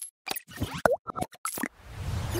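Short cartoon-style sound effects for an animated channel logo: a quick run of pops and clicks, with a brief swoop in pitch just under a second in.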